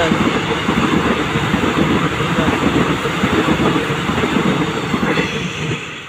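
Electric commuter train passing at speed close by: a loud rush of wheels on rail with rapid clatter, dropping away just before the end as the last car goes by.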